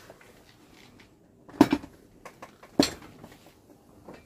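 Two heavy metal clunks a little over a second apart as a pair of 25-pound adjustable plate dumbbells are set down, with faint rustling around them.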